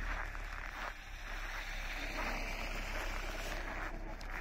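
Footsteps crunching on packed snow as someone walks, a steady scrunching about every half second.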